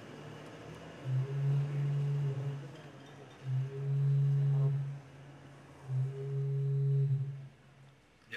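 A phone ringing sound effect played over the hall's speakers: three long, steady low-pitched rings, each about a second and a half with a short pause between, answered just after.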